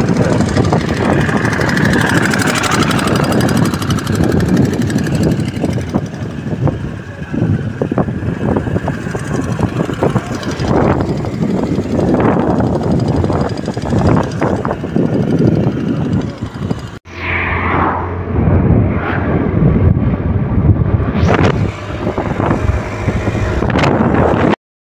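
A moving scooter heard from on board: loud, steady rushing and buffeting of wind on the microphone over the engine running. The sound breaks off sharply about 17 seconds in and then continues.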